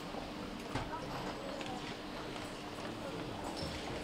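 Faint footsteps of a graduate's heeled shoes on a stage floor, a few light, irregular clicks, over quiet hall room tone with a faint steady hum.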